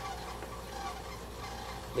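Sandhill cranes calling faintly in the distance, a few short honking calls.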